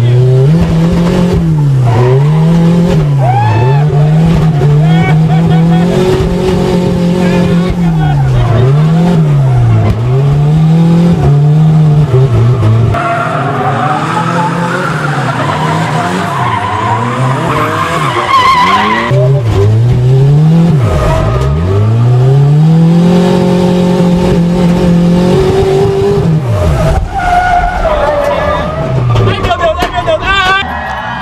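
Turbocharged VW AP four-cylinder engine of a Chevrolet Chevette drift car, revved hard, its pitch climbing and dropping again and again as the car is driven in a drift. Tyres squeal, loudest in the middle.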